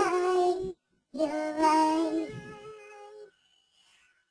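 A high singing voice, apparently alone, ends a phrase just under a second in. After a short gap it holds a long wavering note that fades away, with near silence after it.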